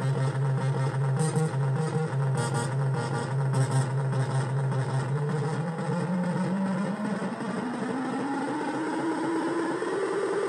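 Synthesizer jam on a Yamaha DJX keyboard with a Korg Monotron Delay: a low held bass note under light ticking percussion. From about halfway, a slow pitch sweep rises steadily and is still climbing at the end.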